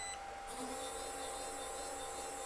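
Faint steady high-pitched whir with hiss from a small portable laser engraver (LaserPecker Pro) running in preview mode, starting about half a second in, just after a short high electronic tone ends.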